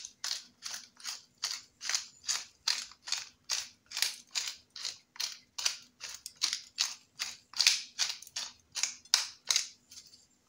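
Pepper mill grinding black pepper, twisted in a steady rhythm of about three short, crisp grinds a second.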